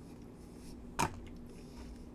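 One short, sharp click about a second in, over a faint steady hum.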